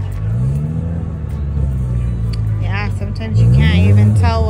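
A car engine idling with a low rumble and revved twice: the pitch rises about half a second in and again, louder, about three seconds in.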